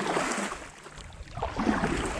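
Kayak paddle stroking through river water: a splashing rush in the first half second, then quieter water moving along the hull.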